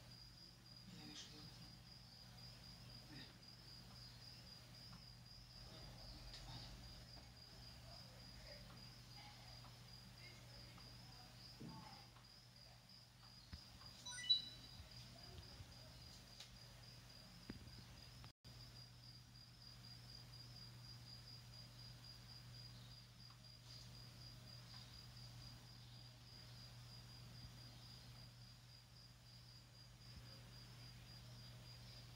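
Near silence: faint room tone with a steady, finely pulsing high-pitched whine and a low hum, and one short sharp click about fourteen seconds in.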